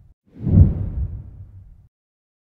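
A whoosh sound effect, heavy in the low end, that swells quickly about half a second in and then fades away over about a second, accompanying a logo animation.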